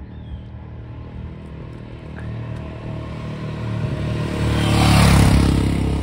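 Royal Enfield Himalayan motorcycle's single-cylinder engine running as the bike rides toward the listener, growing louder and loudest about five seconds in.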